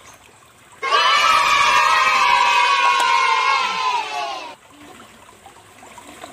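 A group of children cheering together in one long shout of about four seconds, starting about a second in and drifting slowly down in pitch; it sounds like an edited-in cheering sound effect.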